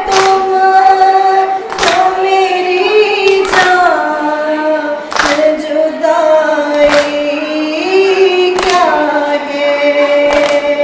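A woman chanting a noha, a Shia mourning lament, in long held, slowly sliding notes. It is cut by sharp chest-beating (matam) strikes in a steady beat about every 1.7 seconds, six in all.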